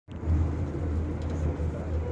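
Irish Rail diesel train's steady low rumble, heard from inside a passenger carriage.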